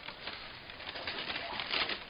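Christmas wrapping paper rustling and crinkling as a toddler grips and swings a wrapped present.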